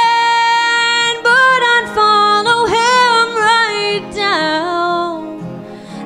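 A woman sings a country-western ballad over her own acoustic guitar. She holds a long note until about a second in, then sings a few moving phrases, and the sound dips near the end before the next line.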